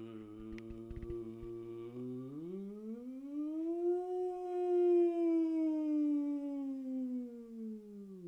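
A person humming one long low note. It holds steady for about two seconds, slides smoothly up to a higher pitch, eases slowly back down, and drops to the starting pitch near the end.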